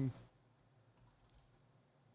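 A man's voice trails off at the start, then a few faint clicks at the computer about a second in.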